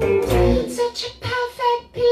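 A woman sings over electric bass and electric guitar in a live band performance. The music comes in short, separated phrases with brief drops between them.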